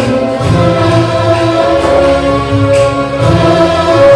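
Loud amplified live band music with singing: long held notes over a steady bass.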